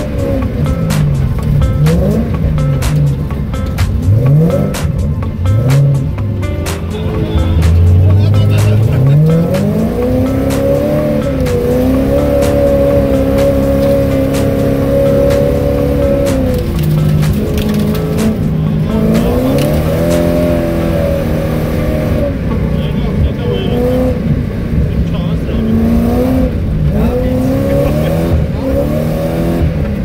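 Car engine heard from inside the cabin, revving up and down again and again as the car is driven hard on a snowy road, with a long steady high-revving stretch about halfway through.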